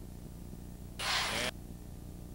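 A sudden burst of hiss about a second in, lasting half a second and cutting off abruptly, over a steady low hum.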